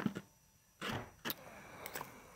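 A few faint, sharp clicks and a brief rush of noise, with a moment of near silence between them.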